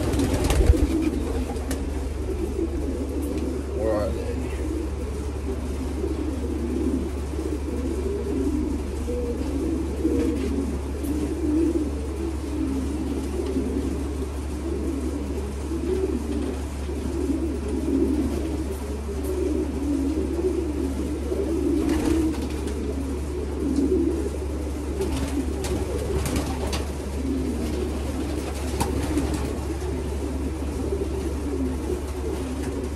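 Racing pigeons cooing continuously in the loft, many overlapping low warbling coos, over a steady low hum, with a few sharp clicks or knocks near the start and later on.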